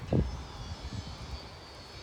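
Faint, steady drone of a distant engine, a low rumble with a thin high whine over it.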